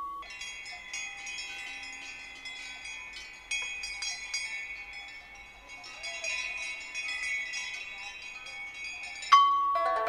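Music for pipa and pre-recorded sounds: a dense shimmer of high, tinkling, chime-like tones that keeps ringing. Near the end a single sharp pipa pluck cuts in and rings on.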